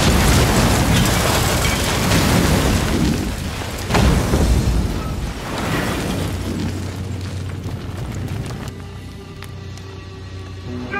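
Car bomb exploding in a fireball: a loud blast with a second boom about four seconds in, fading toward the end under a dramatic film score.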